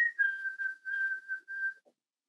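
A person whistling an imitation of a white-throated sparrow's song: a held high note that steps slightly down, then three shorter notes repeated on one lower pitch.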